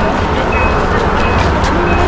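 Steady low rumble of outdoor city noise, with a haze of street sound above it.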